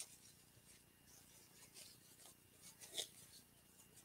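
Near silence with faint rustling of a wired ribbon bow being fluffed by hand, and a soft click about three seconds in.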